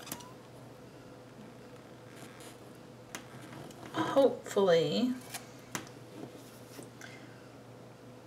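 Quiet paper handling as stickers are peeled and pressed onto a spiral-bound planner page, with a few sharp ticks. A brief murmured voice about four seconds in.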